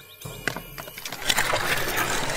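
A rushing noise effect that swells up from quiet about a fifth of a second in and grows steadily louder.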